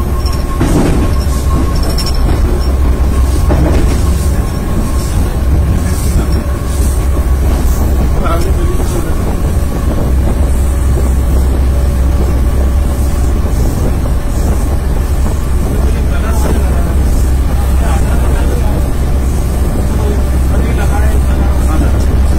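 Train running along the track, heard from the front of the train: a loud, steady rumble with a few short knocks.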